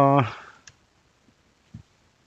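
Laptop keyboard keystrokes while typing: one sharp click about two-thirds of a second in, then a soft, faint tap near the end.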